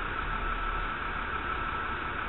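Steady background hiss with a faint, steady high-pitched tone and a low hum underneath, with no distinct event: the recording's own noise floor between words.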